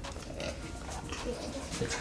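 A child drinking a milky drink from a glass, with quiet gulps.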